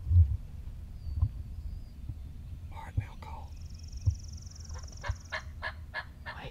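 Turkey yelping: a short call in the middle, then a run of short yelps about three a second near the end. A thin, high, steady tone runs through the middle for about two seconds, and low bumps of handling noise sit underneath.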